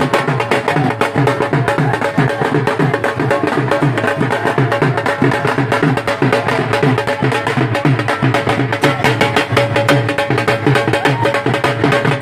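Dhol drums beaten with sticks in a fast, even rhythm, with low drum strokes about four times a second.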